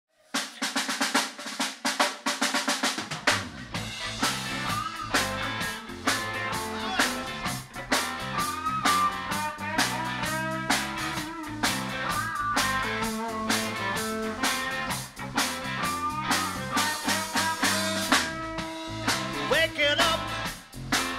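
Live rock band playing the instrumental opening of a song: a quick drum fill on the kit for the first few seconds, then bass, electric guitars and drums come in together about three seconds in and play on steadily.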